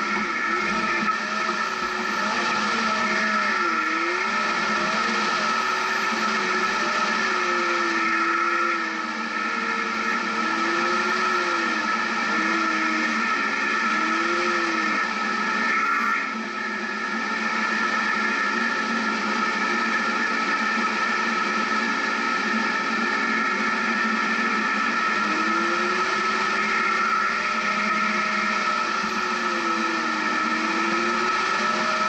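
Jeep Wrangler engine running at low revs while crawling up a rocky trail, its pitch slowly rising and falling with the throttle, over a steady high whine.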